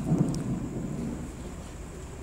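A pause between spoken phrases: a steady low background rumble and hiss of the room. A brief faint low sound comes just after the start.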